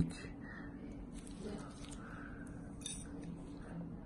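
Quiet room tone with a steady low hum and a few faint, brief metal clicks from stainless dental hand instruments touching orthodontic brackets and wire, about a second in, again shortly after, and near the end.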